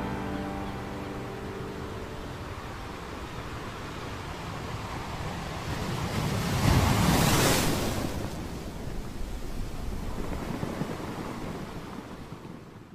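Ocean surf washing onto a sandy beach: a steady rush of waves, with one wave swelling and breaking loudest a little past the middle and a smaller swell after it.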